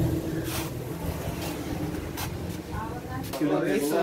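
Footsteps at an even walking pace, about one step every 0.8 s. A person's voice comes in during the last second.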